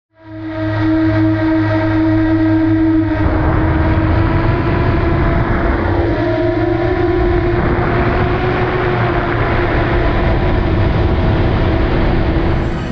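Quadcopter drone's motors and propellers humming steadily, a held tone with overtones over a low rumble, its mix shifting a little about three and six seconds in.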